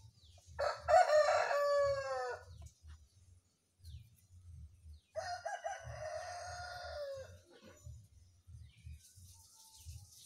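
A rooster crowing twice: a loud crow about half a second in, falling in pitch at its end, and a second, flatter crow about five seconds in.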